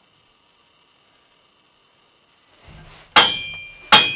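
A horse's hooves on a metal two-horse trailer: near silence, then a low rumble and two loud clangs about two-thirds of a second apart, each followed by a brief metallic ring, the second near the end.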